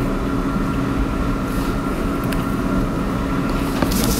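A steady low hum of background noise with faint constant tones, unchanging throughout.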